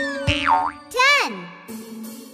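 Cartoon gliding-pitch sound effects, boing-like: one swoop dips down and back up about half a second in, then another rises and falls, over children's background music.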